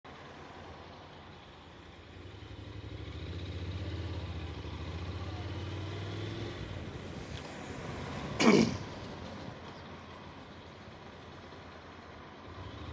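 Road traffic heard from a motorcycle moving slowly in a queue of cars: a low engine drone builds over a couple of seconds, holds, then fades. About two-thirds of the way in there is one short, loud sound that falls quickly in pitch.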